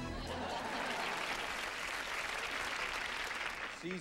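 Studio audience applauding, a steady spread of clapping from many hands.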